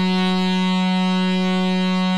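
Electronic club-mix music: a single synthesizer note held steady with a full set of overtones, with no bass or beat under it.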